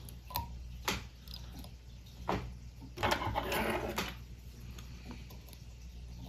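Fly-tying thread being wrapped around a hook with a bobbin. There are a few faint clicks, and a soft rasp about three seconds in.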